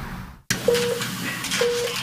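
Low traffic noise fades out at a cut. Then two short electronic beeps at one steady pitch sound about a second apart over a faint hiss of room noise.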